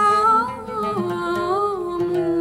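A woman's voice humming a slow lullaby melody in long held notes with a slight vibrato, stepping down in pitch about a second in.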